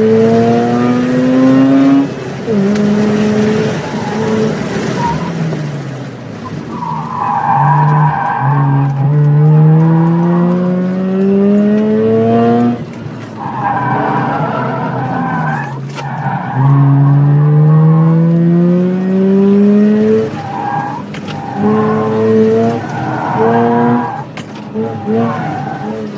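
Inside a car driven hard through an autocross course: the engine revs up in several long rising pulls, each dropping off abruptly as the driver lifts or shifts, and the tires squeal through the corners in between.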